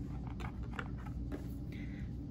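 A few faint clicks and taps of a wire lead being fastened to the metal terminal of a D-cell battery holder, over a low steady hum.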